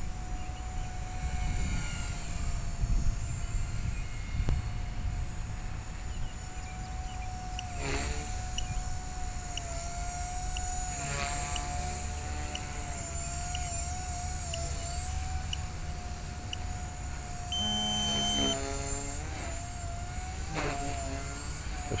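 Blade 180 CFX micro RC helicopter flying some way off: its brushless motor and rotors give a steady thin whine that wavers slightly in pitch as it manoeuvres, over a low rumble of wind on the microphone. A brief beep-like tone sounds about four-fifths of the way through.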